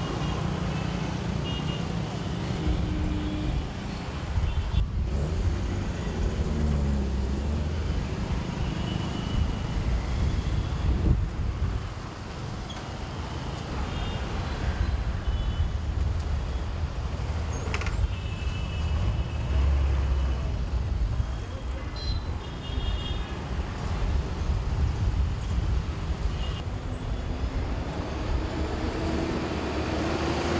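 Congested road traffic of buses, cars, auto-rickshaws and motorcycles: engines running together in a steady low rumble, with short horn toots here and there.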